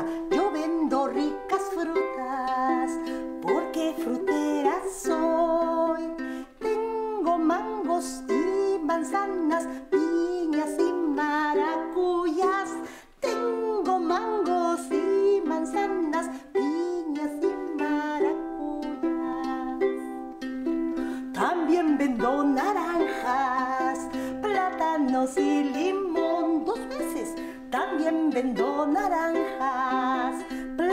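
Ukulele strummed to accompany a woman singing a Spanish fruit-seller's song (pregón), her voice sliding and wavering over the chords, with short breaks about six and thirteen seconds in.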